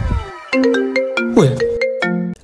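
A mobile phone ringtone playing a short tune of held notes, starting about half a second in, with a brief exclamation over it.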